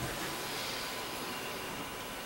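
Room tone in a pause between words: a steady, even hiss with a faint steady tone and no distinct sounds.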